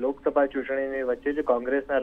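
Speech only: a news reader narrating in Gujarati, with a thin, radio-like sound.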